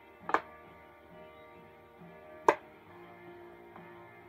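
Quiet background music with sustained notes. A sharp click about two and a half seconds in, and a smaller one just after the start, as a magnet is put onto a whiteboard.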